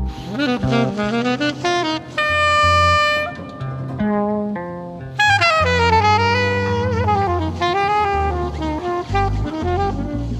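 Jazz quintet recording: a saxophone plays a flowing melodic line over a walking bass, holding one long note for about a second a little after two seconds in, then moving on in quick phrases.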